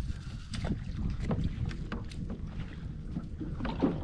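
Low wind rumble on the microphone, with scattered faint clicks and ticks.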